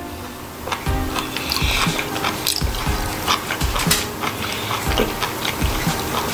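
Close-miked wet chewing and mouth clicks of a person eating, irregular and a few a second, over background music.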